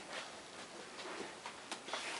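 Quiet room with a few faint, soft knocks and rustles spread through it.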